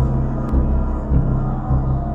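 Dark horror-style intro music built on a deep bass note that pulses about twice a second.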